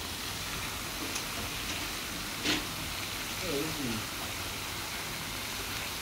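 Steady outdoor hiss with a single sharp click about two and a half seconds in, and a brief low voice sound about a second later.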